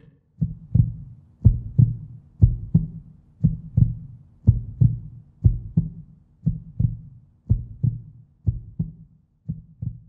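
Heartbeat sound effect: paired low thumps, lub-dub, about once a second, growing fainter near the end.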